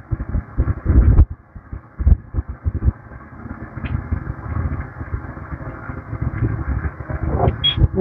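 Dover passenger elevator cab travelling down one floor: a low rumble with irregular heavy thumps during the first three seconds, then steadier running noise, and a short high tone shortly before it arrives.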